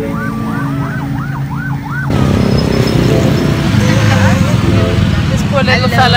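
Electronic music with a synth line swooping up and down about three times a second, cut off abruptly about two seconds in by loud street traffic: motorbike and car engines running over steady road noise, with voices near the end.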